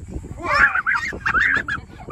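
A child squealing and giggling in high, rising-and-falling bursts while being hoisted off the ground in a hang gliding harness.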